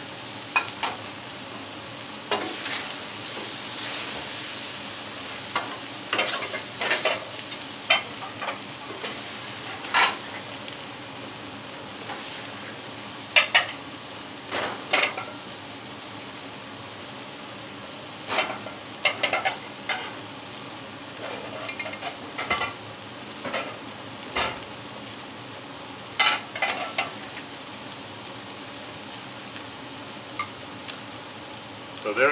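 Food sizzling on a hot outdoor griddle top, a steady hiss, with irregular scrapes and clacks of metal spatulas working the food on the plate, coming in clusters every few seconds.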